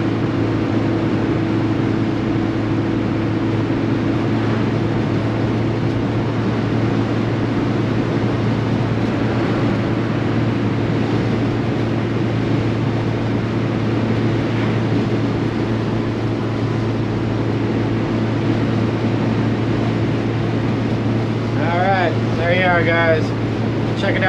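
Inside the cabin of a 1968 BMW 1600 driving at a steady speed: the 1.6-litre four-cylinder engine drones evenly under road and wind noise from the open rear vent windows. A voice is heard briefly near the end.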